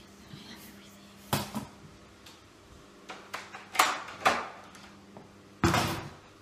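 Several loud clunks and rustles, the strongest about four seconds in and just before the end, over a steady low hum in a small room.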